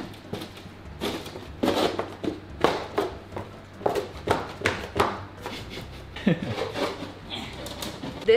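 Irregular knocks, taps and thuds of a loose plywood board as a person stands and shifts her weight on it, trying to press it into place where a protruding tile catches it.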